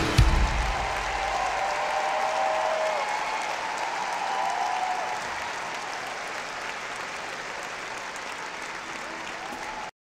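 Concert audience applauding with a few cheers after the song ends, the band's last note dying away in the first second. The applause fades gradually and cuts off just before the end.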